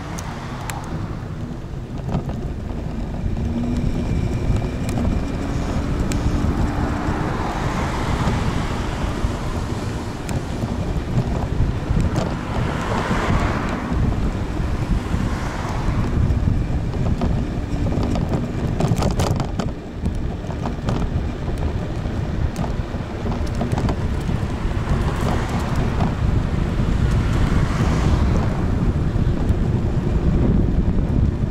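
Wind buffeting the microphone of a camera riding on a moving electric kick scooter, a steady low rumble, with cars passing close by several times, each swelling and fading away.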